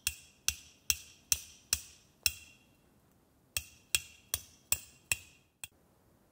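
Metal tent peg being hammered into the ground: sharp ringing blows, about two to three a second, in a run of six, a pause of about a second, then five more and a lighter last tap.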